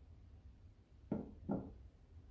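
Two quick sounds of printed tarot cards being slid off the tops of two decks, one after the other about half a second apart, just past the middle.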